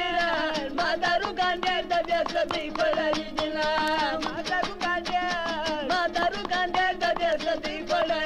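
Afghan Pashto folk music, a landay: a melody that bends in pitch over a steady held tone, with quick sharp note attacks throughout.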